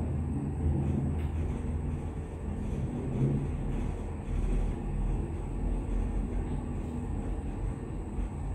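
Freight elevator car travelling in its shaft: a steady low rumble and hum of the car and its drive, which deepens about halfway through.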